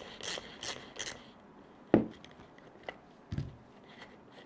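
Gritty scraping and crunching from a hand tool working at the hub of a sand-filled RC truck paddle wheel. There is a sharp click about two seconds in and a short low knock a little later.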